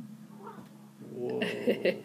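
A person laughing in short, rising bursts, starting about a second in and loudest in three quick peaks near the end.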